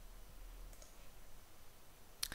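A faint click from a computer mouse over a low steady hiss.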